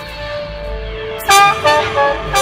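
Electronic music: held, slowly sliding tones over a low pulsing bass, then a little past halfway a loud electric trumpet cuts in with a quick run of short notes.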